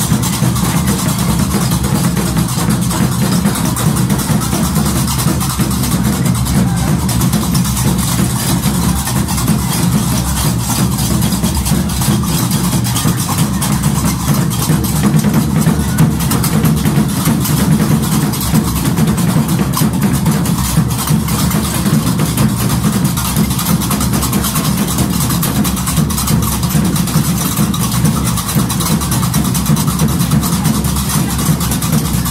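Gnawa music played loud: a continuous dense clatter of qraqeb iron castanets over a deep, steady bass.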